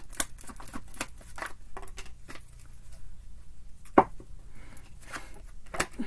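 A deck of tarot cards being shuffled by hand: a quick run of soft card clicks and flicks that thins out, with one sharper snap about four seconds in.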